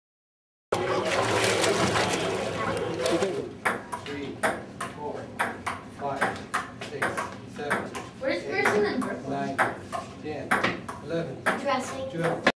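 Indistinct voices with many sharp clicks and knocks in a room, starting with about three seconds of loud rushing noise.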